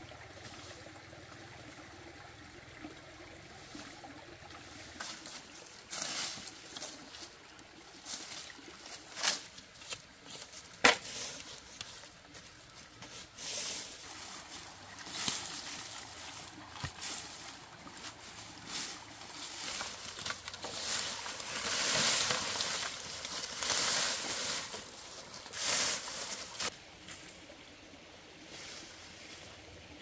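Dry plant stalks and leaves rustling and crackling in irregular bursts as they are dragged and thrown onto a pile, with one sharp snap about eleven seconds in. The bursts are busiest in the second half and die down near the end.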